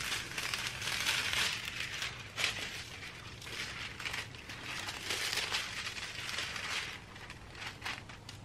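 Pink metallic transfer foil being peeled off a printed label sheet and handled, crinkling and crackling in irregular surges, with a sharp crackle about two and a half seconds in.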